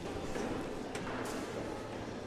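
A few faint knocks of cornhole bags landing on wooden boards, over the steady murmur of a large hall.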